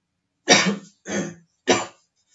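A man coughing three times in quick succession, each cough starting sharply and dying away, the first the loudest.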